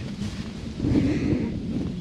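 Wind buffeting the microphone, heard as an uneven low rumble.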